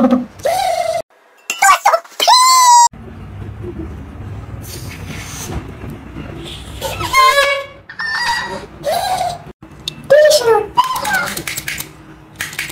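Exaggerated, wordless vocal sounds from a man, with laughter and pitched squeals.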